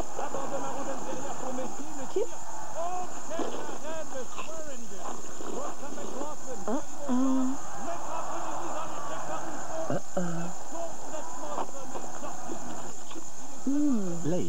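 Many short wordless vocal sounds, hums and murmurs sliding up and down in pitch and overlapping one another.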